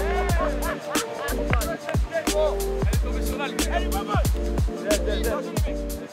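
Background music: a track with a heavy bass line and a steady beat.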